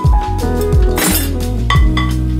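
Background music with a steady beat, over ceramic dishes clinking as they are set into a dishwasher rack, with a sharp clink about a second in.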